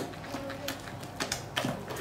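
Silicone spatula stirring thick cocoa cake batter in a glass mixing bowl, with a series of soft, irregular clicks and scrapes as it knocks and drags against the glass.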